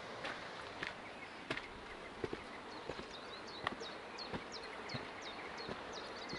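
Footsteps at walking pace, about one step every two-thirds of a second, on a hard path. From about three seconds in, a small bird sings a quick run of short, high, falling notes.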